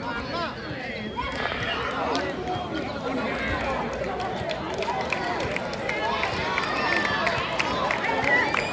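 A crowd of spectators and players talking and shouting, many voices overlapping, growing a little louder toward the end.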